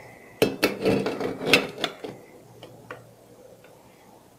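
Mitred pieces of square steel tubing knocking and sliding against a steel square as they are fitted together into a right-angled corner: a quick run of metallic clinks and scrapes in the first two seconds, then a few light taps.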